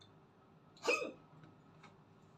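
A man coughs once, sharply and loudly, about a second in, as food goes down the wrong way and catches in his throat while he is eating.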